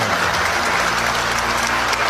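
Large audience applauding: dense, steady clapping from many hands.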